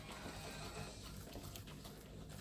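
Faint background music with a low, steady bass line, under soft sounds of thick cornmeal batter being hand-mixed in a stainless steel bowl.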